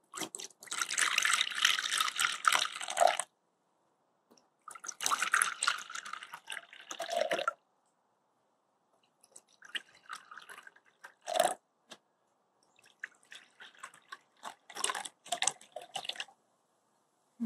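Water poured from a glass jar into small ceramic bowls of dried cochineal insects, in separate pours of about three seconds each with short gaps between, the pitch rising slightly as each bowl fills. The later pours are fainter and broken, with a single knock about eleven seconds in.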